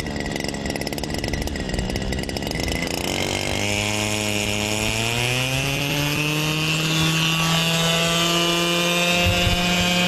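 Motor and rotor of a crop-spraying remote-controlled helicopter drone running. Its pitch climbs from about three and a half seconds in and then holds steady as it spins up, heard as video playback over a video call.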